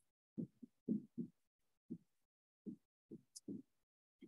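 Faint, dull taps of a stylus on a tablet screen during handwriting, about a dozen short knocks at an uneven pace.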